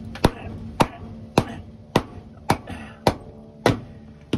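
A red mallet knocking on the spine of a Milwaukee tradesman knife to baton it through a log: seven sharp, evenly spaced strikes, a little under two a second. The blade is driven in up to the handle and can go no further.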